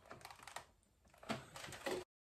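Faint light clicks and rattles of a plastic router and Ethernet cable being handled and connected, in two short clusters with a brief silent gap between them.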